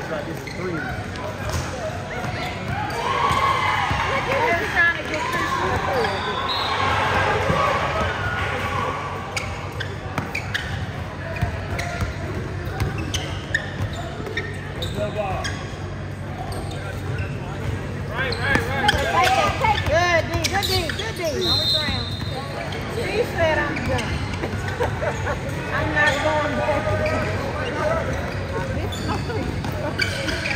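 A basketball bouncing on a hardwood gym floor during play, with people's voices calling and talking throughout.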